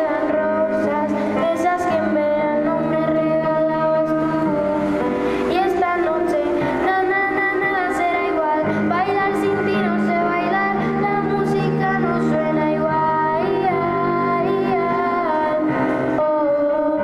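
A young girl singing a song into a microphone, her voice amplified over instrumental accompaniment with sustained low notes.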